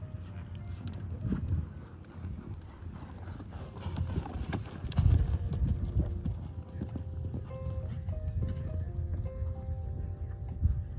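Horse's hoofbeats cantering on sand arena footing, loudest about halfway through. Music plays in the background in the second half.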